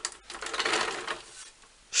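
Small castor wheels of a wooden stool converted into a trolley rolling over a gritty concrete floor as it is pushed about, a dense clicking rattle that stops about a second and a half in.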